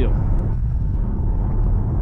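Steady low road and wind noise inside an electric car's cabin cruising at about 115 km/h, with tyre rumble and no engine sound.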